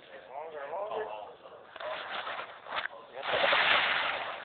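Indistinct men's voices talking, then a loud, rough burst of noise near the end.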